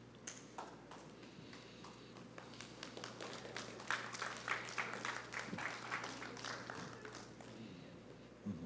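Light, scattered clapping from a congregation: a few claps at first, building to a thicker patter about three to four seconds in, then thinning out toward the end.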